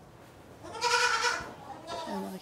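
A young African pygmy goat bleats once, a single call of under a second about halfway in.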